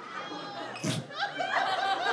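Audience laughing, with a short sharp sound about a second in and single laughs standing out in the second half.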